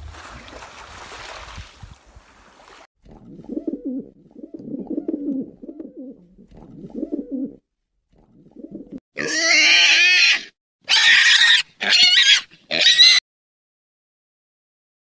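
A soft rushing noise, then rock pigeons cooing in low, throaty pulses for several seconds. Near the end come four loud, high-pitched animal calls, the first the longest.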